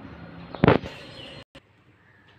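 A single short, loud bang or knock about two-thirds of a second in, over faint background noise. A little later the sound drops out abruptly for a moment.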